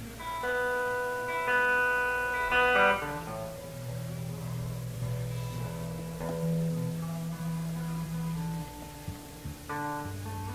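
Guitar being tuned between songs: single plucked notes left to ring and changed in pitch, a cluster of higher notes in the first three seconds, then lower notes held for several seconds.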